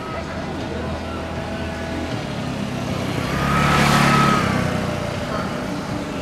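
A motor vehicle passing by, growing louder to a peak about four seconds in and then fading, with a whine that rises and falls in pitch across the pass.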